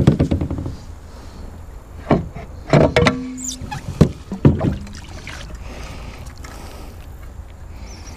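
Knocks and thumps of gear being handled against a plastic fishing kayak's hull: a quick rattle at the start, then a few separate hits between about two and five seconds in, over a low steady rumble.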